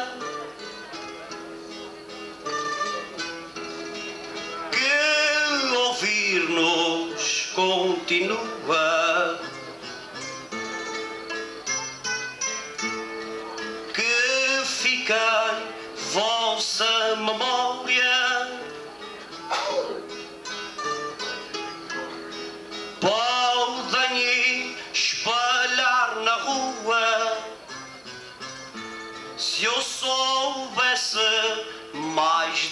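Azorean cantoria ao desafio: a man sings improvised verse in three phrases over plucked guitar accompaniment, and the guitars play on alone between the phrases.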